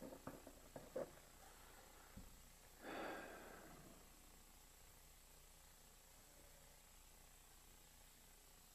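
Near silence: quiet room tone with a few light clicks in the first second and a soft knock about two seconds in. A single exhaled breath, a sigh, comes about three seconds in.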